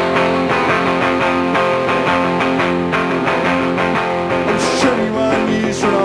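Solo electric guitar strumming chords in a steady driving rhythm: the instrumental intro of a song, before the vocal comes in.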